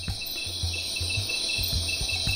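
Insects chirping in a steady, rapid high trill, like a rainforest night chorus, over a low pulsing beat that repeats about twice a second.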